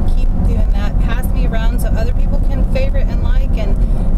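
Steady low rumble of a car being driven, heard from inside the cabin, under a woman's talking voice.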